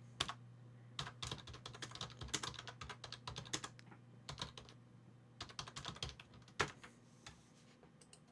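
Faint computer keyboard typing: a string of irregular keystrokes, one louder click at about six and a half seconds, thinning out near the end, over a low steady hum.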